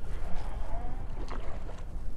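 Wind rumbling on the microphone and small waves lapping against a boat's hull, with a few faint light clicks.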